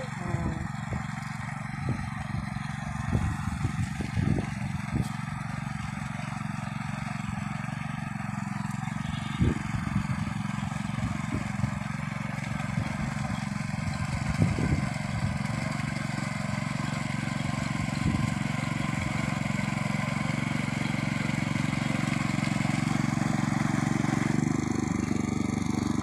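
Two-wheel power tiller's engine running steadily under load while puddling a flooded paddy field, growing louder as it comes closer.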